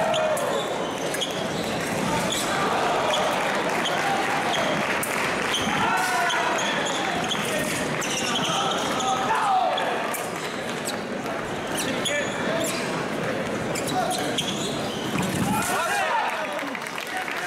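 Fencing footwork thudding on the piste with sharp clicks of foil blades, in a large echoing hall. Voices call out several times, with a louder shout near the end.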